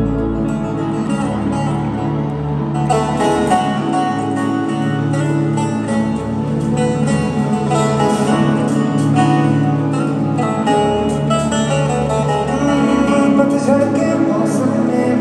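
Live band music over an arena PA, with guitar to the fore, heard from the stands in a reverberant hall; the music fills out about three seconds in.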